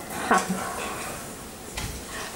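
Quiet room tone with a brief faint voice shortly after the start and a soft low thump near the end.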